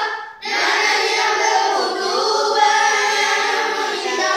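A class of young children singing a Malay song together in unison, with a brief pause for breath just after the start.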